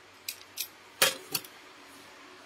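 Scissors snipping: about four short, sharp snips, the loudest about a second in.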